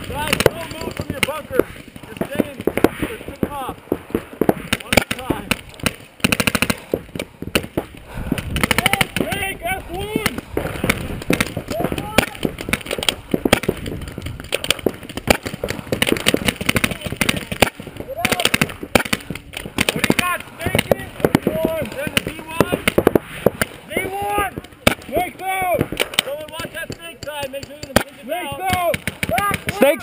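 Paintball markers firing in rapid strings of sharp pops, several players shooting at once and nearly without a break, with voices shouting in between.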